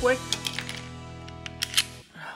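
Background music with a steady chord under a few sharp clicks as a red plastic shipping plug is pulled out of a Smith & Wesson M&P Shield .40 pistol. The two loudest clicks come near the end.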